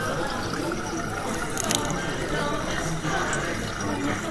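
Water bubbling and trickling in a restaurant lobster tank, over a steady hum of room noise, with a brief sharp rattle a little under halfway through.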